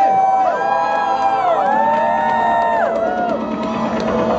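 Live synthpop song played loud over a club PA. A melody line is held in long notes that glide between pitches, with the crowd cheering.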